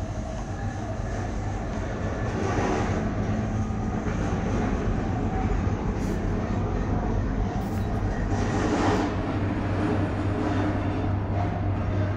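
Steady low rumble and hum inside a cable car gondola as it travels along the haul rope, the hum growing stronger in the last few seconds.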